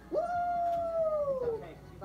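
A young man's long 'woo' whoop that jumps up in pitch at once, is held high and slowly falls away over about a second and a half.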